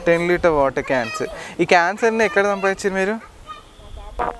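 A person's voice in a quick run of drawn-out, pitched syllables, stopping about three seconds in.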